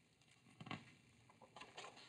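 Faint handling of a large paperback picture book: a soft tap about two thirds of a second in, then light paper rustles as a page is turned.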